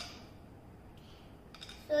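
Plastic LEGO pieces handled in the hands, clicking: one sharp click at the start and a few small clicks near the end, before a child's voice starts.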